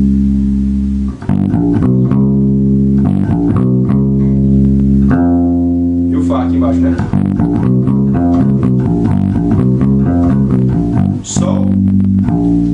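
Electric bass guitar plucked with the fingers, playing through the G blues scale (the pentablues): a few held notes, one long sustained note about halfway through, then a quicker run of notes.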